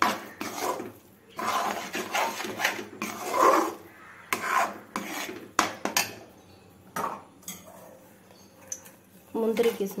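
Steel spoon scraping and stirring a thick chana dal mixture around a non-stick pan, in irregular strokes that thin out to a few scattered clicks after about seven seconds.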